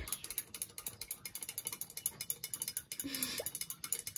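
Rapid, even mechanical clicking, many clicks a second.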